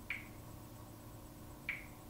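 Two short, sharp clicks about a second and a half apart as a smartphone is tapped, over a faint steady room hum.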